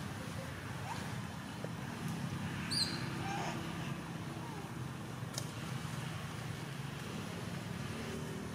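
A steady low motor rumble, like nearby traffic, with a single short high chirp about three seconds in.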